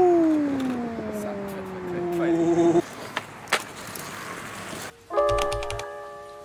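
A single pitched tone sliding slowly downward for about three seconds, then about five seconds in a low thud and a held chord of steady tones, an edited sound effect and music sting.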